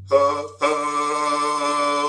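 A man's chanting voice, with no drum: a short sung syllable, then about half a second in one long, steady held note.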